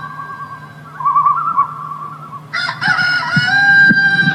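A rooster crowing several times in a row. The longest, loudest crow starts about two and a half seconds in and is held to the end.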